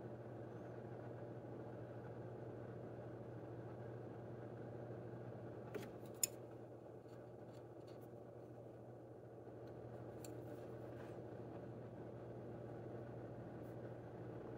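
Faint, steady low hum of a small motor or appliance running in the room, with a few faint light clicks about six seconds in and again around ten seconds in.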